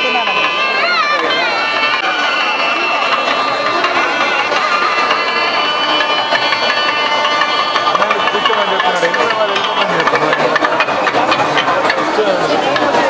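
Voices of a festival crowd, with a long, high melodic tone held over them that wavers in pitch about a second in and holds steady until near the end.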